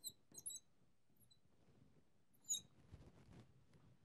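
Marker squeaking on a glass lightboard: a few faint short squeaks in the first half-second and a louder one about two and a half seconds in, followed by a soft rustle.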